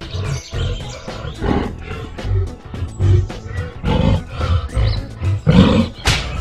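Cartoon soundtrack: background music with a steady beat, with lion roar sound effects over it.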